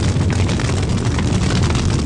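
Funeral pyre fire burning steadily: a continuous low rumble of flames with scattered faint crackles.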